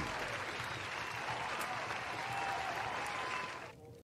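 Applause after a song ends, fading out near the end.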